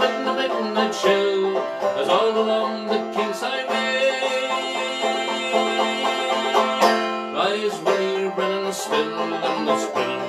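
Long-neck banjo played in a lively folk-song accompaniment, with a man's voice singing along over it.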